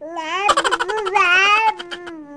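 A one-year-old baby's loud, high-pitched vocalizing: one long sung-out sound that rises and then falls in pitch, breaking up into rapid pulses near the end.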